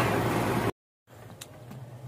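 Diesel engine running just after it has caught from a crank, at about 1000 rpm, a steady low drone. It cuts off abruptly less than a second in, leaving silence and then faint room tone.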